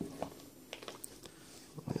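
Faint handling sounds of a leather-bound Bible being opened on a wooden table: a few scattered light clicks and taps with soft rustling.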